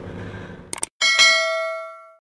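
A dramatic bell-like sting sound effect: one bright metallic clang about a second in, ringing and fading away over about a second, just after two short clicks.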